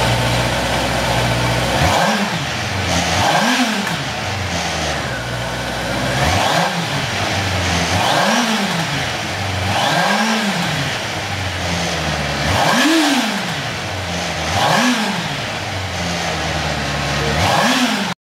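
Motorcycle inline-four engine idling and revved in short throttle blips, about eight times; each rev climbs in pitch and falls back to idle.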